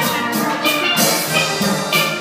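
Steel band playing live: several steel pans, from the smaller lead pans to the large barrel-sized bass pans, struck together in a steady rhythm.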